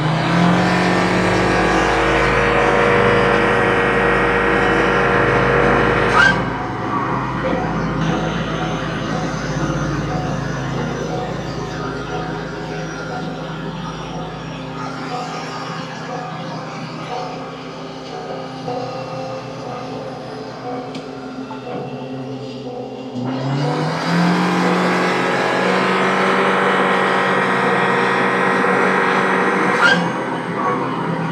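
Turbocharged Honda Civic FE engine with an upgraded turbo, run at full throttle on a roller dyno. The revs climb fast and then hold high and steady for about six seconds, then drop away with a click as the throttle is lifted. It runs quieter for a long stretch before a second full-throttle pull begins about 23 seconds in and holds high to the end.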